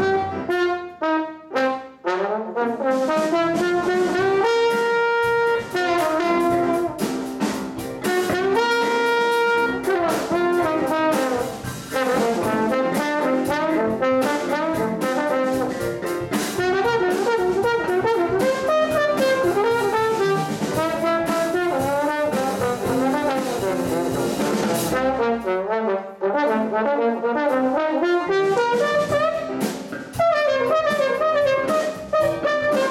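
Jazz big band playing, with a solo trombone out front over the band and two long held notes about five and nine seconds in.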